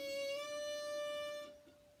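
Fiddle playing a single bowed note held on one down bow for about a second and a half, its pitch stepping up slightly shortly after it starts, then fading away.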